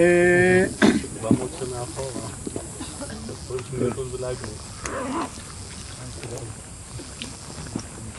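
Speech: a man's voice holding a steady, drawn-out 'ehh' for under a second at the start, then only quiet, scattered talk.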